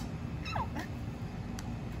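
A woman's short, high-pitched exclamation of "oh" about half a second in, falling in pitch, over a steady low background rumble.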